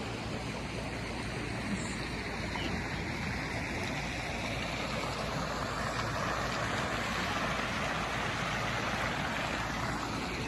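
Steady rushing of churning water in a hot-spring pool, growing slightly brighter in the second half.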